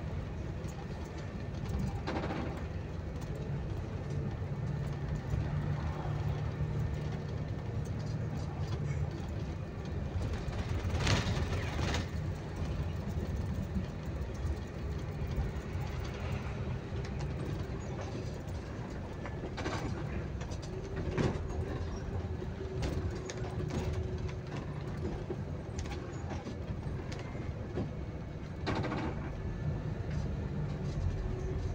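Bus engine and road noise heard from inside the cabin of a moving bus: a steady low rumble, with a few short sharp knocks scattered through it.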